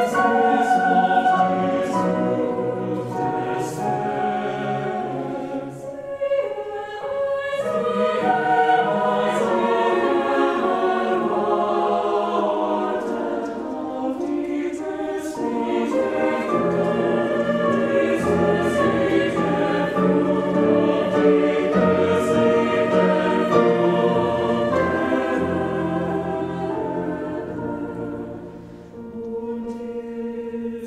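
Mixed choir singing a slow classical choral work in several parts, with piano accompaniment. The sound thins briefly about six seconds in, and dips near the end before a soft held chord.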